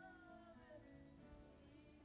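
Faint worship singing: a woman's voice holding slow, drawn-out notes that glide in pitch, over a soft instrumental backing.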